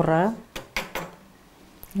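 Three short, sharp clicks of hard objects knocking together, about half a second to a second in, spaced roughly a quarter second apart.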